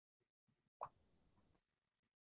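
Near silence, broken once, a little under a second in, by a single short click of a computer keyboard key being pressed.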